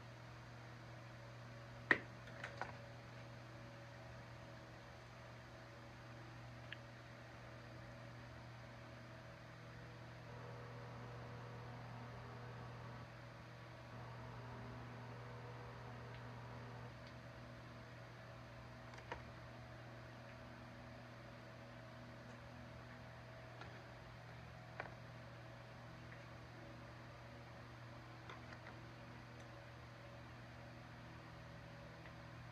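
Quiet workshop room tone with a steady low hum, broken by a few small clicks of pliers and a metal tire-plug insertion tool being handled; the sharpest click comes about two seconds in.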